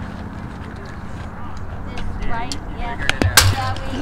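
Faint voices in the background over a steady low rumble. Two sharp knocks come close together about three seconds in.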